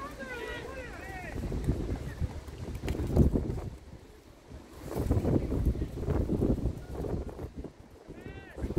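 Wind buffeting the microphone in gusts, loudest about three seconds in. High shouted calls are heard in the first second.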